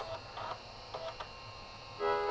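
A 3.5-inch floppy drive faintly seeking and reading a disk: a few soft ticks and short buzzes from the head mechanism over a low hum, as the drive is retried after a read error.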